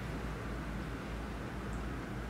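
Steady low hum with a faint hiss underneath: the room's background noise, with no distinct events.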